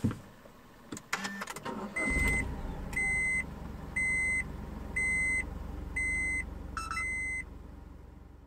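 Honda S660's turbocharged three-cylinder engine starting about two seconds in after a couple of clicks, then idling with a low, steady hum. Over it a seatbelt-reminder chime beeps six times, about once a second.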